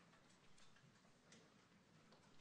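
Near silence: faint room tone with a few scattered soft clicks.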